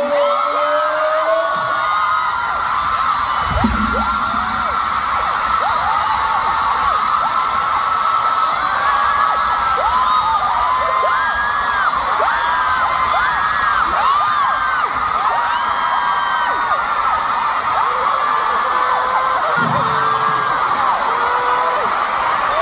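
Large arena concert crowd, mostly high voices, screaming and cheering without a break, many overlapping whoops rising and falling. A single low thump about four seconds in.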